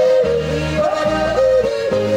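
A male singer yodeling, his held notes breaking in sudden jumps of pitch, over live accordion and acoustic guitar with a steady repeating bass beat.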